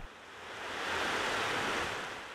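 A soft rush of outdoor noise, with no distinct tones or knocks, that swells to a peak about a second in and then fades.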